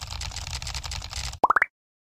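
Editing sound effects for a text animation: a rapid run of small clicks as the words type out, then three quick rising 'plop' blips, and the sound cuts off suddenly.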